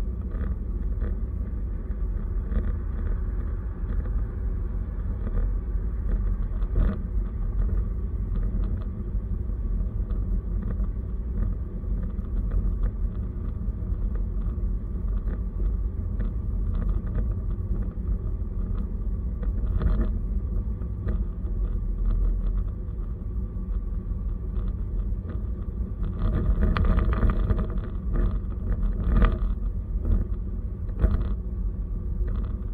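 Car driving at highway speed, heard from inside the cabin: a steady low rumble of engine and tyre noise, with a few brief knocks or rattles and a louder stretch a few seconds before the end.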